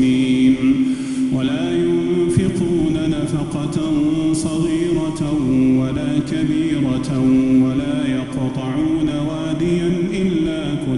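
An imam's single male voice chanting Quran recitation in the slow, melodic style of Taraweeh prayer. He holds long notes and moves between them in gliding steps.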